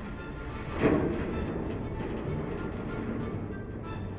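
Background music with sustained tones. About a second in comes a loud thud: a trash bag landing inside a metal dumpster.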